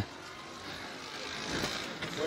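Street ambience at a city intersection: a steady hum of road traffic, swelling a little about a second and a half in.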